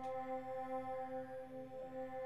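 Sustained synth pad sample playing from the Waves CR8 sampler: one steady held tone with even overtones and a soft pulse about three times a second. The sample loops in seesaw mode, playing forward and then in reverse.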